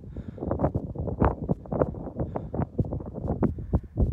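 Wind buffeting a phone's microphone outdoors, heard as an irregular run of rumbling pops and gusts.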